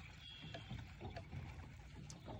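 Faint water lapping against a small boat's hull, a low, even wash with a few light ticks.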